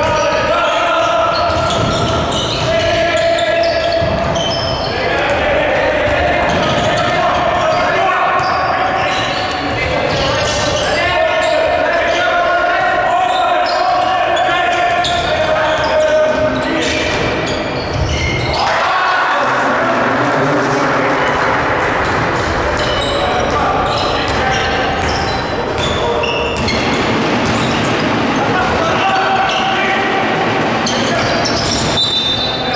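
Basketball being dribbled on a hardwood court during play, with voices calling out in the gym throughout.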